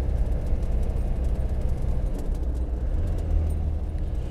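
Land Rover Defender 90's performance-tuned 2.5-litre turbo diesel running steadily on the move, heard from inside the soft-top cab as a low drone over road noise. The drone swells slightly about three seconds in.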